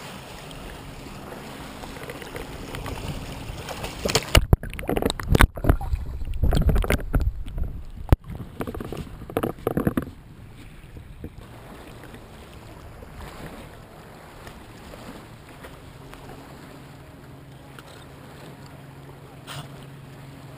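Lake water splashing and sloshing around a camera held at the waterline, with a run of loud, irregular splashes from about four to ten seconds in. After that the water laps gently, and near the end a low steady hum joins in.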